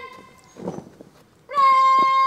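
Bugle call: a held note dies away at the start, and after a short quieter gap another long, steady, loud note begins about a second and a half in.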